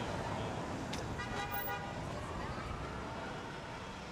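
Street traffic noise with a car horn sounding briefly about a second in, followed by a vehicle's engine note rising in pitch. The ambience fades toward the end.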